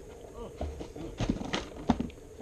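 A few sharp knocks and clacks in quick succession, starting just past the middle, the last one the loudest.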